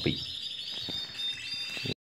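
Caged canaries and goldfinches singing: thin, high trilling notes that cut off suddenly just before the end.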